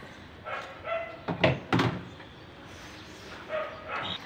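A dog barking a few times, with two loud barks in quick succession about a second and a half in.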